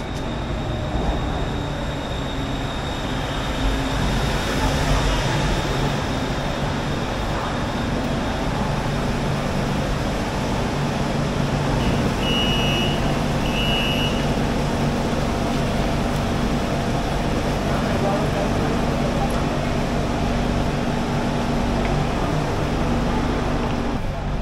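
Bangkok BTS Skytrain pulling into an elevated station: the noise of the arriving train swells over a few seconds, then settles into the steady low hum of the stopped train. Two short electronic beeps sound about halfway through.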